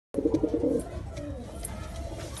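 Domestic pigeon cooing, a low throaty pulsing coo that is loudest in the first second and then continues more softly. It is a male's bow-coo in courtship display.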